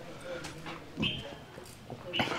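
A brief, faint animal call about a second in, over low background noise.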